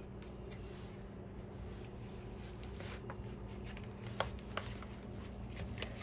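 Spatula scraping a thick cream-cheese and breadcrumb filling down the sides of a mixing bowl: faint soft scrapes and a few light clicks over a steady low hum.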